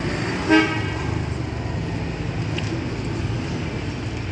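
A car horn toots once, briefly, about half a second in, over steady street traffic noise.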